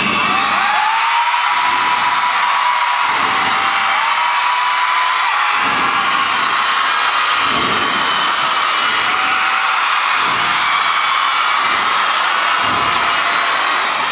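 Large concert crowd screaming and cheering without a break, long high-pitched screams standing out above the mass of voices.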